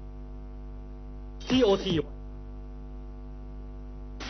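Steady electrical mains hum with a ladder of even overtones, broken about one and a half seconds in by a voice briefly saying "TOT".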